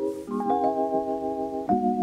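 Background music: held keyboard chords, changing chord about a third of a second in and again near the end.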